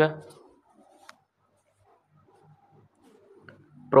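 A man's voice ends a phrase just after the start. Then comes a pause of about three seconds, broken only by a single faint click about a second in, before speaking resumes at the very end.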